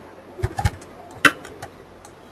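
Computer keyboard typing: several separate, irregularly spaced keystroke clicks as a short HTML tag is typed.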